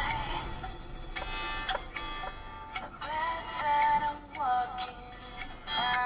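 Background song with a sung vocal melody.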